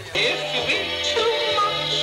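Music cuts in abruptly just after the start: held chords under a wavering melody line with vibrato.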